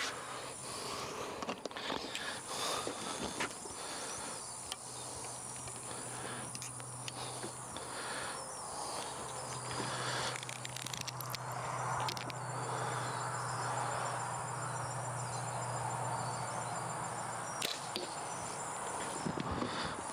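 Outdoor ambience over open grassland: a steady drone of insects, with a low hum through the middle and a few faint clicks.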